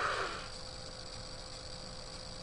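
Quiet room tone with a faint steady hum, opening with a brief soft breath that fades within half a second.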